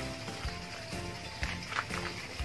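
Background music: held notes that shift in steps, with a few soft knocks.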